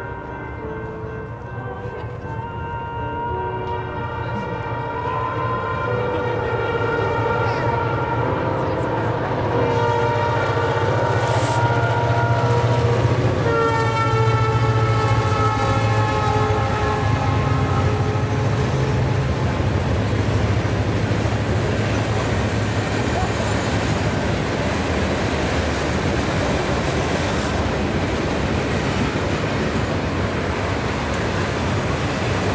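Freight train of open hopper cars passing close by. Its horn sounds several tones at once in long blasts that grow louder, breaks and drops in pitch a little before halfway as the locomotive goes by, then fades under the steady rumble of the cars rolling past.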